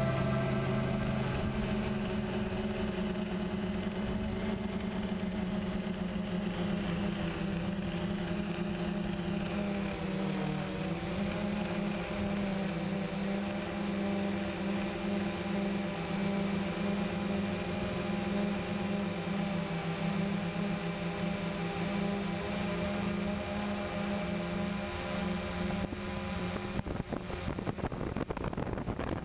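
DJI Phantom quadcopter's motors and propellers humming steadily, picked up by the camera on board. The pitch dips and comes back up briefly about ten seconds in.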